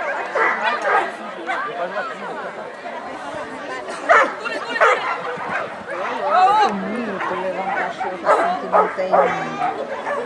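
A dog barking repeatedly in short, excited barks and yips, over voices and crowd chatter.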